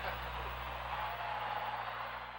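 Steady hiss with a low hum: the background noise of an old 1970s broadcast soundtrack, with no music or voice over it.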